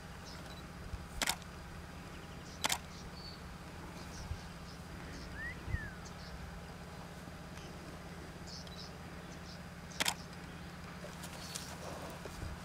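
Quiet outdoor ambience: a steady low hum with a few faint bird chirps, broken by three sharp clicks or knocks, about one and three seconds in and again near ten seconds.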